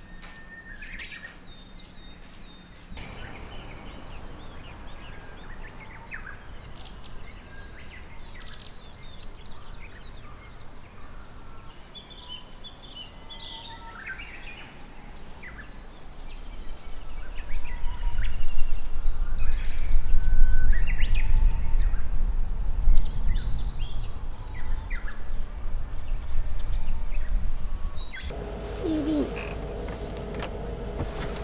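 Wild birds chirping and calling in short, scattered phrases. About halfway through, a loud low rumble rises under the birdsong, lasts about ten seconds, and stops shortly before the end.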